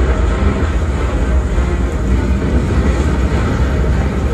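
Show soundtrack played over loudspeakers: a loud, deep, steady rumble with little melody.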